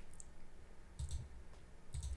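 A few faint clicks of a computer mouse, one about a second in and another near the end.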